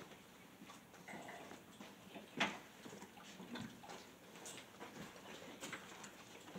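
Quiet room with a few faint clicks, the sharpest about two and a half seconds in.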